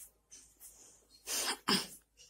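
Two short, noisy bursts of breath from a person, like a sneeze or a cough, about a second and a half in, the second one louder.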